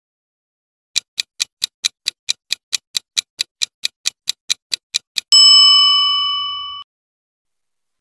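Quiz countdown timer sound effect: clock-like ticks at about four a second for some four seconds, then a single bell ding that rings and fades, marking time up.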